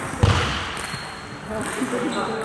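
A single heavy thud about a quarter second in, booming and echoing through a large sports hall, over faint background voices.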